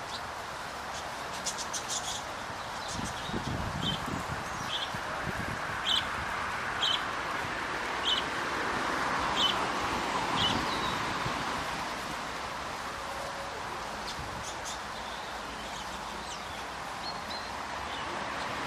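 A small bird chirping, one short high chirp about every second for several seconds, over rustling in the straw and a steady outdoor hiss.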